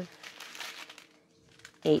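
Small clear plastic bags of square diamond-painting drills crinkling as a strip of them is moved, for about a second before fading out.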